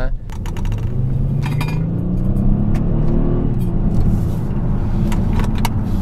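Kia Stinger GT1's 3.3-litre twin-turbo V6 under hard acceleration in sport mode, heard from inside the cabin, after a few clicks of the drive-mode dial. The engine note climbs for about two seconds, drops at an upshift around halfway, then keeps pulling.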